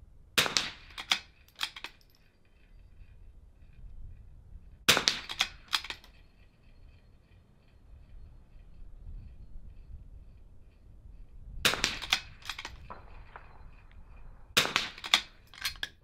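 Four .22 LR rimfire rifle shots fired at steel targets, spaced a few seconds apart. Each shot is followed by a quick run of sharp metallic clicks and clanks, and a faint ring from the struck steel hangs on after some of them.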